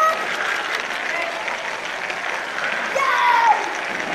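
Lego train running over plastic track, picked up from on board as a steady crackling rattle, with the voices of a crowd in the hall over it. A high voice rises above the rattle about three seconds in.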